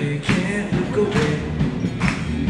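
Live rock band playing, with drum kit hits about twice a second under electric guitars, amplified through PA speakers in a large hall.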